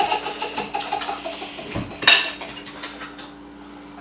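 Light clinks and knocks of tableware in a kitchen, a handful of small sharp strikes with the loudest about two seconds in, over a steady low hum.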